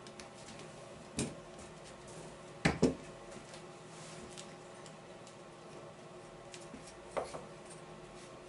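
Wooden bee-frame bars knocking against a wooden workbench as they are set down and picked up: a single knock about a second in, a louder double knock just under three seconds in, and another knock near the end.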